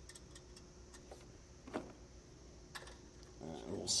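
A few faint, scattered light metal clicks as a small nut is threaded by hand onto a circuit breaker's terminal stud and a nut driver is set over it.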